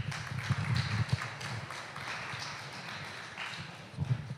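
Audience applauding: a round of scattered clapping that slowly tapers off.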